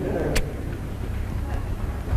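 A man drinking from a plastic bottle close to a headset microphone, with one sharp click about a third of a second in, over a steady low rumble.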